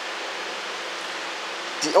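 Steady background hiss with a faint low hum under it, unchanging in level. A man's voice starts again near the end.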